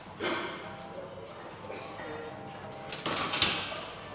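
Spotters shouting encouragement as a lifter grinds a heavy barbell back squat up from the bottom, with the loudest burst of shouting about three seconds in.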